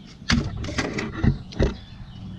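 A handful of short, sharp knocks and thumps, about five of them spread across two seconds: handling noise from working close to the microphone among metal tractor parts.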